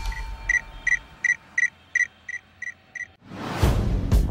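A run of eight short, high electronic beeps of one pitch, about three a second. A rising whoosh follows near the end.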